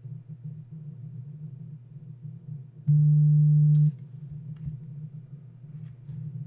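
A low, steady hum throughout, broken about three seconds in by a loud, steady low-pitched tone that lasts about a second and then cuts off.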